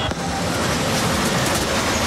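Fairground bumper cars running: a loud, steady, noisy rumble with no clear tone.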